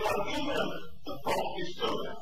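A man speaking in a lecture, in a recording of poor quality that makes the words hard to make out.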